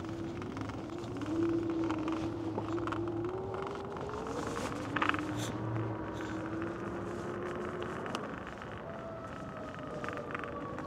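Electric bike motor whining as the bike rolls along a paved path, its pitch rising slowly as it picks up speed, then dropping and returning higher near the end. Tyre and rolling noise run underneath, with a sharp knock about five seconds in.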